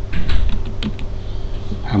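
Computer keyboard typing: a few quick key clicks as a short word is typed, over a low steady hum.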